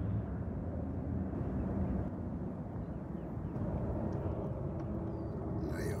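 Steady low rumble of wind buffeting a phone microphone at the water's edge.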